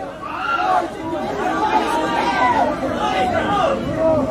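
Several people's voices overlapping at once, a busy chatter of talking or singing voices.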